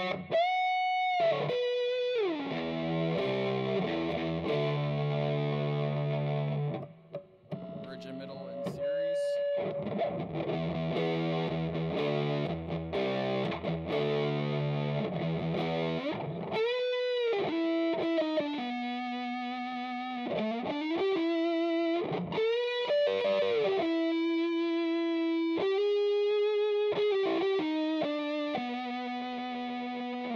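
Electric guitar, a Strat with D. Allen Voodoo 69 pickups set to a parallel pickup combination, played through a vintage Ampeg Reverberocket II tube amp with a distorted tone. Strummed chords fill the first half, broken by a brief drop about seven seconds in. The second half is single-note lead lines with string bends and long sustained notes.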